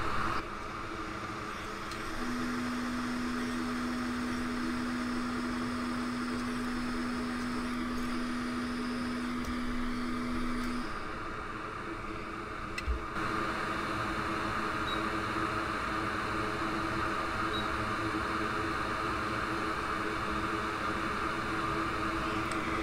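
Hot air rework station blowing steadily on a logic board, a fan-like hiss with a low steady hum for several seconds early on. About halfway through there is a click, and the airflow hiss grows stronger.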